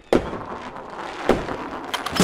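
Fireworks going off: a sharp bang just after the start, a crackling hiss, and another bang a little past a second in.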